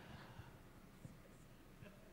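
Near silence: faint room tone with a few small ticks, in a pause between spoken sentences.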